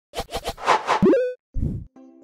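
Cartoon-style sound effects added in editing: a quick run of about four popping plops, then a swelling whoosh that ends in a short upward-sliding tone about a second in, and a low thump near the end.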